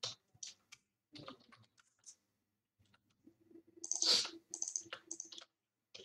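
Computer keyboard typing: scattered, irregular keystrokes, with a quick, louder run of keys about four seconds in.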